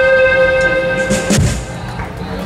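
Live rock band holding a sustained closing chord, ended by a drum hit about a second and a half in, after which the music falls away.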